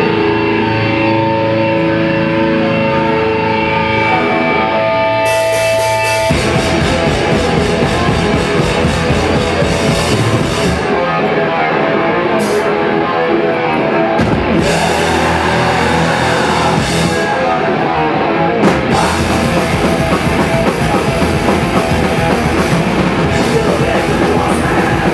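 A thrash metal band playing live at full volume: electric guitars ring out held chords, then about six seconds in the whole band crashes in with drums and distorted guitars and keeps playing.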